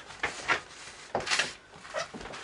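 A few short handling sounds, soft knocks and rustles, about three in all, the loudest a little over a second in.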